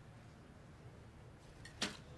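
A recurve bow being shot: a faint tick, then a single sharp snap of the string on release near the end, over quiet outdoor background.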